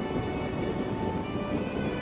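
Soft background music with long held notes, over a low steady rush of wind and road noise from the moving motorcycle.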